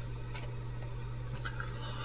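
Quiet room tone with a steady low hum, between stretches of speech.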